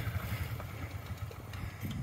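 Small four-wheeler (ATV) engine running on choke just after a push start, a low rumble that fades and dies out near the end: the engine is stalling.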